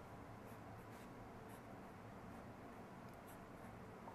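Faint scratching of a pencil on paper as lines are drawn, several light, short strokes one after another.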